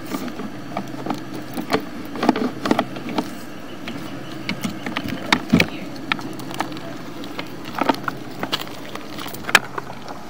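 Sewer inspection camera's push cable being fed into the sewer line: irregular clicks and knocks, with a couple of sharper ones about halfway through and near the end, over a steady low hum.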